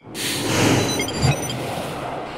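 A whooshing noise sound effect for the animated title wipe. It swells in quickly and holds steady, with a low thud about a second in.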